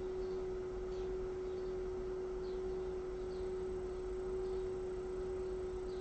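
A steady pure tone held at one unchanging pitch, over faint low background noise.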